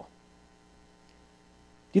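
Faint steady hum of several even tones, like electrical mains hum, in a pause between words; a man starts speaking at the very end.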